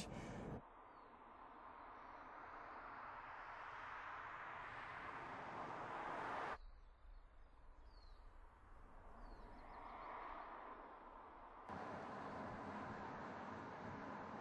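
The electric Mercedes-Benz SLS AMG E-Cell driving, heard mostly as a hiss of tyres on the road that swells steadily over several seconds. After abrupt cuts comes quieter outdoor air with a couple of faint bird chirps and a brief swell, then a steady hiss.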